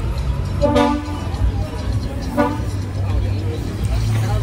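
Street noise with a vehicle horn tooting twice, a longer toot about half a second in and a short one a couple of seconds later, over a steady low hum.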